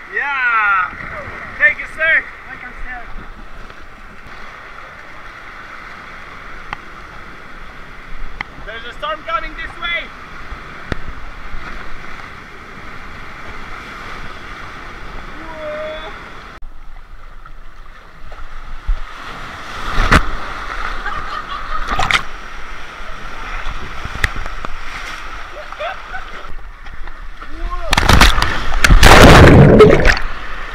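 Rushing, churning water of a water-park rapids ride around a rider in an inner tube, with a couple of short voice calls in the first half. In the second half come sharp splashes, then a loud, long splash near the end as the water washes over the microphone.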